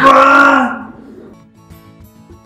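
A woman's loud, drawn-out wail, falling slightly in pitch, in a staged crying scene, lasting about half a second. It then gives way to soft background music with plucked, guitar-like notes.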